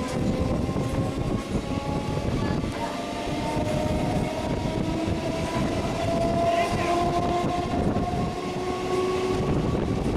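Electric multiple-unit local train running, heard from the open doorway of a coach: a steady rumble of wheels on rail, with several faint whines that climb slowly in pitch.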